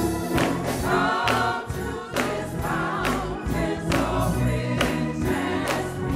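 Gospel choir singing to a steady beat of about two strokes a second.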